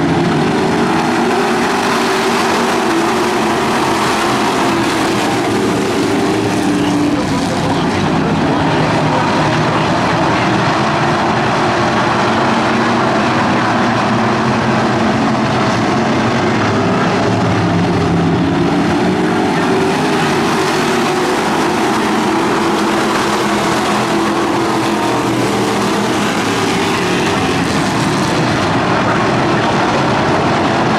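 A pack of street stock race cars running at racing speed, several engines sounding at once, their pitch rising and falling as the cars go through the turns. The sound is loud and continuous.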